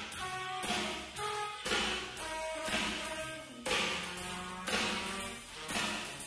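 Live jazz quartet of tenor saxophone, trombone, double bass and drums playing. Horns hold pitched notes over a walking bass line, with drum and cymbal strokes about twice a second.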